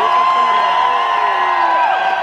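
Large concert crowd cheering and screaming, with one loud high scream held for almost two seconds before it breaks off.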